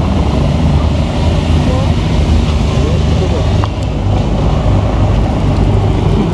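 Police escort motorcycles' engines running as they ride past in a slow motorcade, a steady low hum with cars following, while onlookers talk over it.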